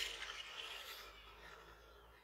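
Faint background noise with a low hum, dying away almost to silence near the end.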